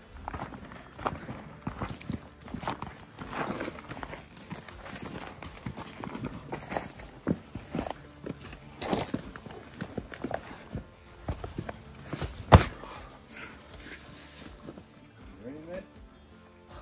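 Footsteps hiking over loose rock and gravel on a steep slope, an irregular run of crunches and scrapes, with one sharp knock about twelve seconds in.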